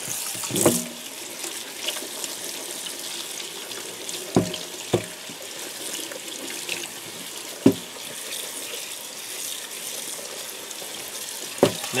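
Cold water running from a faucet into a stainless steel sink over canvas shoes being rubbed by hand to rinse out the soda ash, a steady splashing rush. A few sharp knocks come through it.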